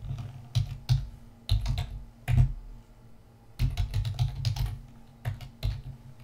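Computer keyboard keys being typed in short bursts of clicks, with a pause of about a second partway through.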